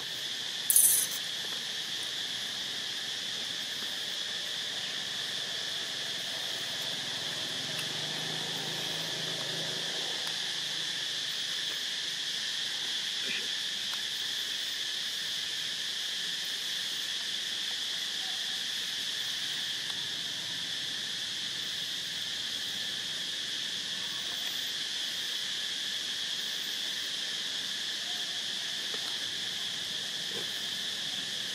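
A steady, continuous chorus of insects. About a second in, a brief, loud, high-pitched hiss is the loudest sound.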